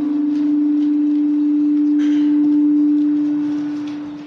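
A loud, steady single-pitched hum, a pure tone a little under 300 Hz, held for about four seconds and fading out near the end: microphone feedback ringing through the desk microphone's sound system.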